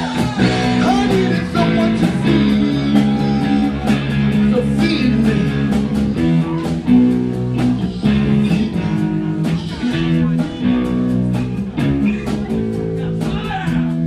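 Live rock band playing: electric guitars over bass and a drum kit keeping a steady beat.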